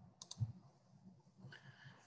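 Two faint, quick clicks about a quarter second in, followed by soft low thumps.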